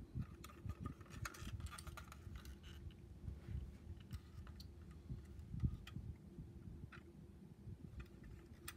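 Faint handling noise from a 1/24-scale diecast car being turned over in the hands: scattered light clicks, rubs and soft low bumps over a low steady hum.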